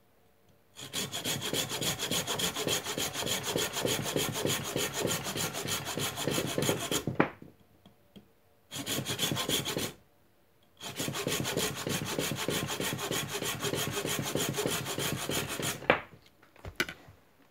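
Folding pruning saw cutting across a thin wooden branch with quick back-and-forth strokes, slicing off a disc. It comes in three runs with short pauses about seven and ten seconds in, and a sharp knock ends the first run.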